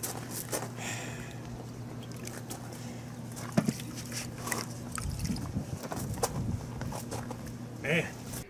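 Sponge dipped and worked in a plastic tub of water, with small splashes and drips, then rubbed against the side wall of an RV, over a steady low hum; a brief low rumble comes about five seconds in.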